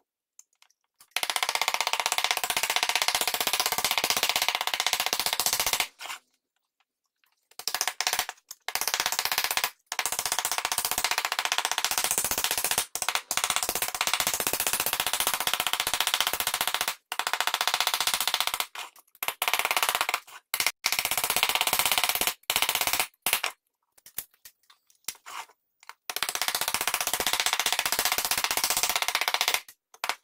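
Hammer rapidly striking a tinplate fruit cutout into a hollow carved in a beech block to sink it. The blows run together into a fast metallic rattle in several long runs that stop abruptly, as in sped-up footage.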